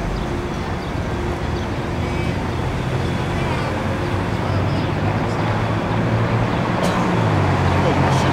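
City street traffic noise with a vehicle engine's low hum that grows louder in the second half, over faint voices.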